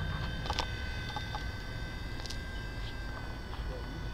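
HobbyKing FP100 micro RC helicopter in flight: its electric motor and rotor give a steady high whine that holds one pitch, over a low rumble.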